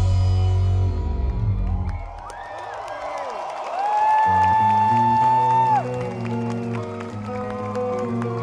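Live rock band with electric guitars, bass and drums: a loud full-band chord drops away about two seconds in, leaving crowd cheering and gliding whoops. A high note is held for about two seconds, and from about four seconds in the band holds a new sustained chord.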